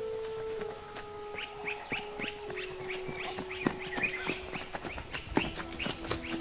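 Bird-like chirps, short falling calls repeating about three a second, over long held notes that step down in pitch, with scattered sharp clicks.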